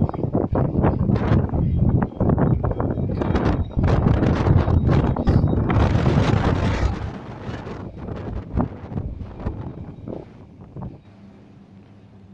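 Wind buffeting the microphone in a heavy, gusting rumble that eases off about seven seconds in and turns much quieter.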